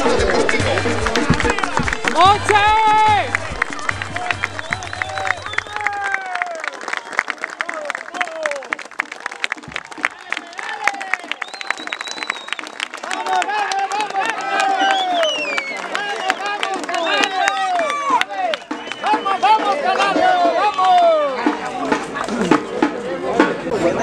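Football crowd in the stands singing and shouting, with clapping, over music with a steady drum beat that stops about six seconds in.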